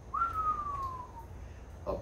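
A man whistles once in admiration: a single clean note that jumps up and then slides slowly down, lasting about a second.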